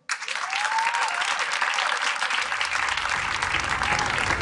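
Audience applauding: a dense burst of clapping from a seated crowd that starts suddenly and holds steady.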